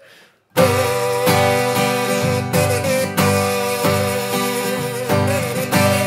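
Kazoo buzzing the harmonica-solo melody over a strummed capoed Taylor acoustic guitar, the two starting together about half a second in.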